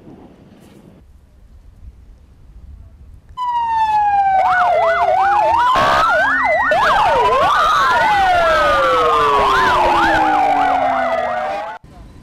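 Sirens of several fire and rescue vehicles start up together after a few seconds of quiet, overlapping: slow rising-and-falling wails and fast warbling yelps. They sound in tribute, ending a minute of silence.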